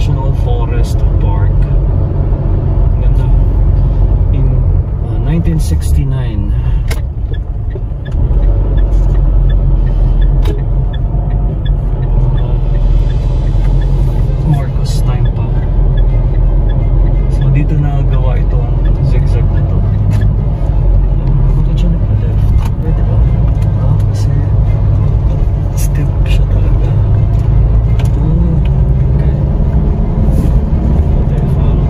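Steady low rumble of a car's engine and tyres heard from inside the cabin while driving, briefly quieter about five to eight seconds in.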